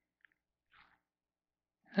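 Near silence: room tone, with a faint tick about a quarter second in and a soft, brief rustle just under a second in. A man's voice begins at the very end.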